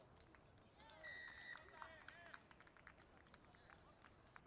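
A referee's whistle blown once, a steady blast of about half a second starting about a second in, signalling the try just grounded by the posts. Faint shouts from players and onlookers around it.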